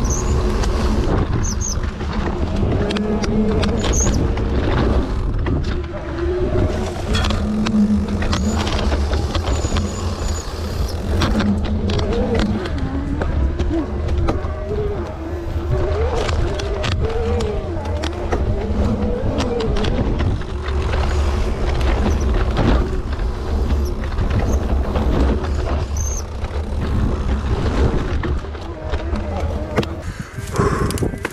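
A vehicle's engine running under way, its pitch rising and falling as the throttle changes, over a steady low rumble.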